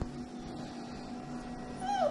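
A month-old puppy gives one short, high whine near the end, falling in pitch.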